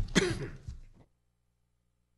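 A person's short throat-clear with a few knocks of people moving about, then the sound cuts off abruptly to silence about a second in.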